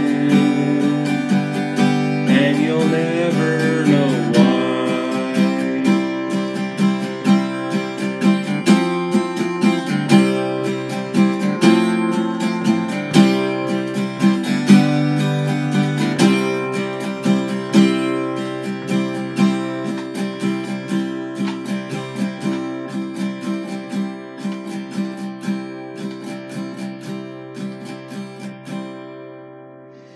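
Acoustic guitar strummed in steady chords, closing out a folk song. The strumming gets gradually quieter and dies away near the end.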